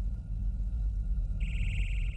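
A low rumbling hum throughout; about one and a half seconds in, a high, steady buzzing tone comes in and holds.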